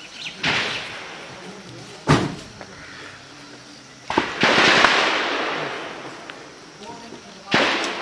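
Distant gunshots during a gunfight, four sharp reports spaced a second or two apart, each followed by a long rolling echo; the one about four seconds in echoes the longest.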